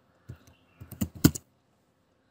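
Typing on a computer keyboard: a quick run of key clicks in the first second and a half, the last few loudest.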